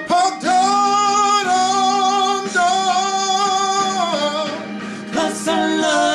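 A man singing a Tagalog pop ballad, holding long drawn-out notes with vibrato over guitar accompaniment, then moving to shorter notes near the end.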